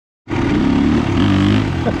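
Dirt bike engine revving up as it rides past, over a motorcycle engine idling steadily close by. A man starts laughing at the very end.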